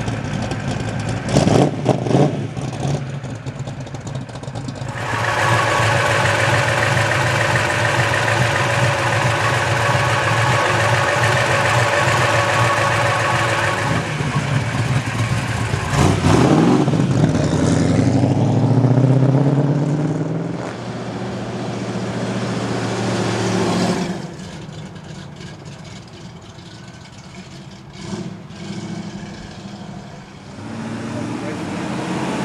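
Classic Mopar muscle-car V8 engines as the cars drive slowly past one after another, rumbling with sharp throttle blips near the start. About 16 seconds in, one car revs up and accelerates away in a rising climb, and the sound drops off after about 24 seconds.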